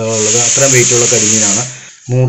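A voice talking over a loud, steady, hissing noise that stops shortly before the end.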